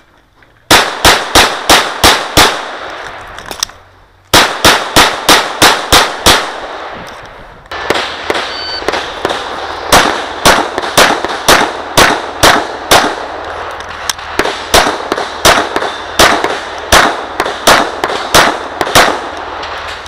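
Glock 34 9mm pistol fired in fast strings of shots, about three to four a second, each shot ringing off the range. There is a break of nearly two seconds after the first string, then the shooting keeps up to the end.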